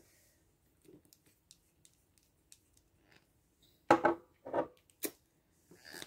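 Handling noises from a gel polish striper bottle: a few faint ticks, then a couple of sharp knocks and a click about four to five seconds in as the bottle is put down on the table.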